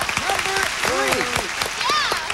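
Studio audience and contestants applauding, with voices and laughter over the clapping.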